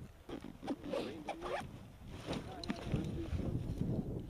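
Dry heather being pulled, snapped and rustled by hands, with quick rasping tears, as sprigs are worked into ghillie-suit camouflage. A low rumble builds in the second half.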